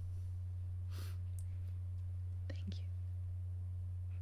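A steady low hum throughout, with soft, whispered speech about a second in and again just past the middle ("thank you").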